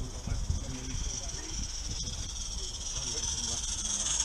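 Small live steam locomotive (16mm scale, 32 mm gauge) hissing steam as it runs toward the listener, the hiss growing steadily louder as it nears.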